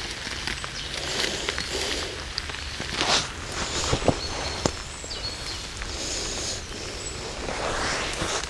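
Steady rain hiss over a forest floor of dry leaves, with footsteps and rustling in the leaf litter as a rope is fixed around a tree trunk, and a few sharp clicks in the middle.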